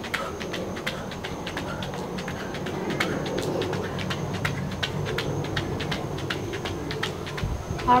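Quick footfalls of sneakers jogging in place on an exercise mat over concrete, about three to four light impacts a second, kept up steadily. A thin, steady high-pitched tone runs underneath.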